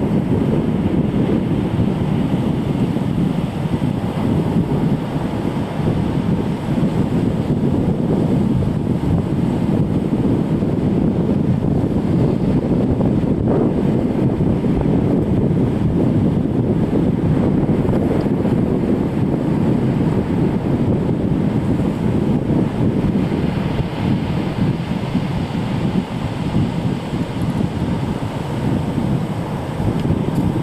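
Steady, loud wind rumble buffeting the microphone, with breaking surf beneath it.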